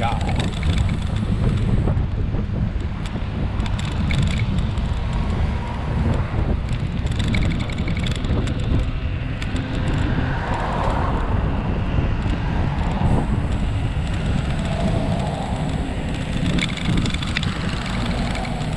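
Steady low rumble of a knobbly mountain-bike tyre rolling on a tarmac path, with wind buffeting a camera mounted on the front wheel. Cars pass on the road alongside, one swelling up about ten seconds in.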